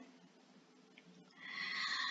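Near silence, then in the second half a woman's soft in-breath, a quiet airy hiss leading into her next word.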